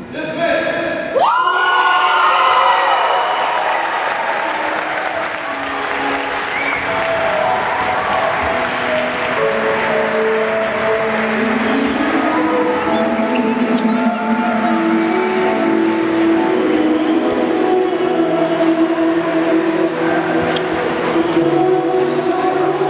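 A crowd breaks into cheering, whoops and applause about a second in, then keeps up a steady din of many excited voices and clapping.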